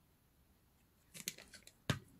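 Small crafting handling noises: a few faint rustles and clicks from a punched paper ring and a glue bottle being handled, then one sharp click just before the end.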